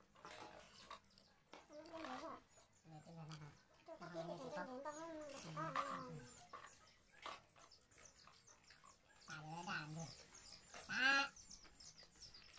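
Children's and adults' voices talking and calling in short, quiet stretches, with a higher, curving call near the end.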